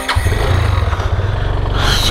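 Yamaha FZ25's single-cylinder engine running steadily at low revs, heard from the rider's seat.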